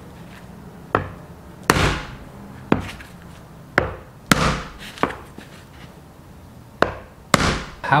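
Back of a kitchen knife striking the thin, hard shell of a cupuaçu fruit: about eight sharp knocks at uneven intervals, some louder ones trailing off briefly, as the shell cracks.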